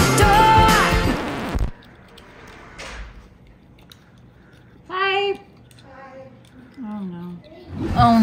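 Pop music with singing that cuts off suddenly under two seconds in, followed by a quiet stretch with a faint click and two short wordless vocal sounds from a woman, the second a low groan falling in pitch.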